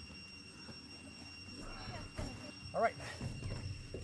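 Aluminium-framed camping cot with a 900D Oxford-cloth bed being picked up off the grass. The fabric rustles and the frame and legs knock lightly a few times, starting about one and a half seconds in.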